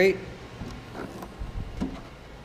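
Trunk lid of a 2009 Chevrolet Impala being lifted open by hand: a few light clicks and knocks, then a low thump near the end as the lid swings up.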